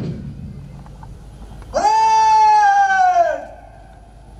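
A single long, drawn-out shouted parade word of command, starting sharply about two seconds in and sliding slowly down in pitch for about a second and a half, as the tail of the pipe band dies away at the start.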